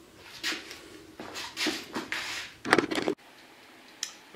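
A handful of short rustling and clattering handling noises, about five in under three seconds, then an abrupt cut to quiet room tone.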